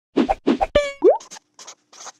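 Animated logo intro sound effects: two quick thuds, a ringing ping, a fast rising glide about a second in, then short scratchy pen-on-paper strokes as handwritten lettering is drawn in.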